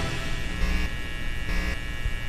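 Steady electrical hum and buzz of a neon-sign sound effect, mixed with music.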